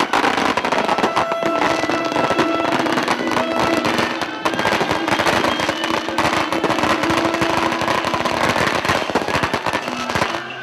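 Strings of firecrackers going off in a loud, unbroken rapid crackle, with festival music playing underneath.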